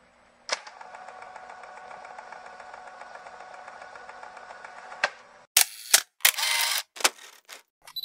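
Channel-intro sound effects: a click, then a steady electrical-sounding buzz for about four and a half seconds that stops with another click, followed by several sudden loud noisy bursts.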